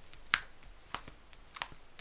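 Clear plastic cover film being peeled up from the adhesive of a diamond painting canvas, giving about three sharp clicks as it comes unstuck. It is a test of the glue, which proves very sticky.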